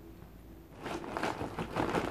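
A run of close, crackling and crunching noises, starting about a second in.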